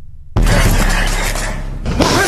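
A sudden loud crash about a third of a second in, after a brief lull, with a noisy tail that fades over about a second and a half.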